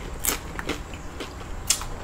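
Tortilla-chip nachos being chewed close to the microphone: a string of sharp crunches and wet mouth clicks, the loudest near the end.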